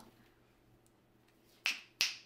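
Finger snaps: two quick, sharp snaps after a near-silent pause, the first about a second and a half in and the second right at the end.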